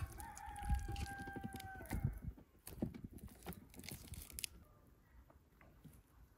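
A rooster crowing once, a single long call of about two seconds at the start, followed by light clicks and knocks of meat being handled in a metal pot.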